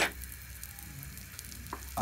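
Butter melting and sizzling faintly in a hot frying pan, with small crackles, after a sharp tap right at the start.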